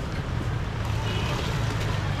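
Busy market background: a steady low rumble, like a motor or passing traffic, under faint distant voices.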